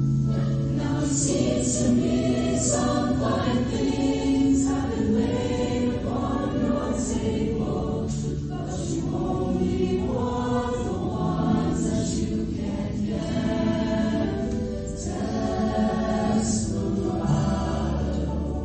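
Mixed-voice show choir singing in harmony, with held low notes under the voices.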